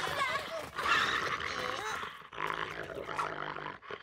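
Cartoon dog growling, with children's voices.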